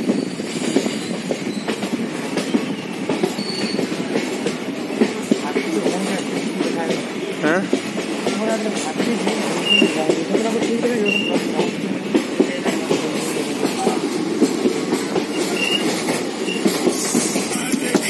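Amaravati Express passenger train running at speed, heard from an open door of a moving coach: a steady rumble of wheels on the rails with frequent clicks from the rail joints.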